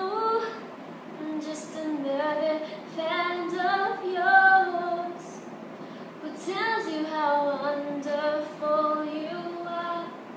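A young woman singing solo with no accompaniment, in long held notes that glide in pitch, in two phrases with a short pause about halfway through.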